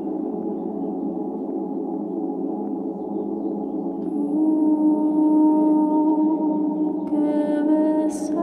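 Ambient drone music of layered, sustained vocal tones built up on a looper. A new held note swells in about halfway through, and higher tones join near the end.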